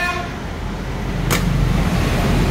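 A scooter's hinged seat slammed down onto its latch, one sharp click about a second and a half in, over a steady low rumble.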